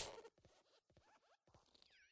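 Near silence: the tail of an intro-animation sound effect dies away in the first moment, followed by a few faint, high, squeaky chirps.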